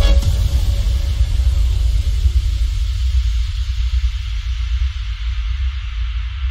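Deep, artificially boosted sub-bass rumble left sounding after a rap track's beat stops, with a faint hiss above it, slowly dying away.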